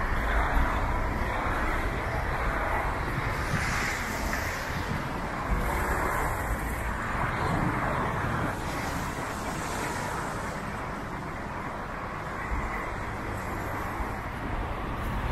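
Road traffic on wet streets: a steady hiss of tyres on wet asphalt with a low rumble, swelling several times as cars pass.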